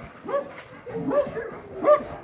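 Young Central Asian Shepherd Dogs (Alabai) barking as guard dogs, three barks spaced under a second apart, the last one the loudest near the end.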